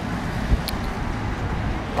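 Steady low outdoor rumble, with one sharp thump about half a second in and a brief high click just after.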